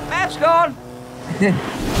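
Motorcycle engine and traffic noise running steadily under a man's shouted line, with a short spoken 'yeah' about halfway through.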